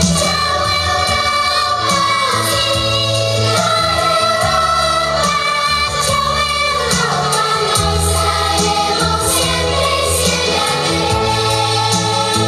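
Children's vocal group singing a pop song in chorus over an amplified backing track with a steady bass line.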